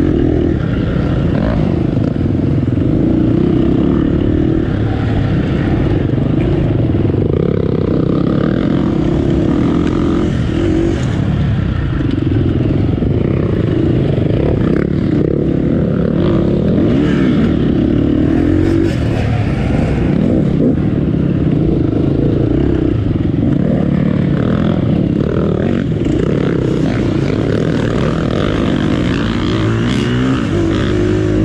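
KTM off-road motorcycle engine under constant throttle changes, revving up and falling back again and again as the bike is ridden over a rough trail, heard from on the bike itself.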